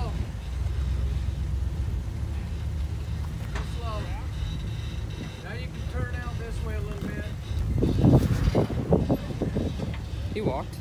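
Off-road Jeep engine running at low crawling revs while the vehicle picks its way over rock. Faint voices come in about four and six seconds in. About eight seconds in there is a louder stretch of rumbling with knocks.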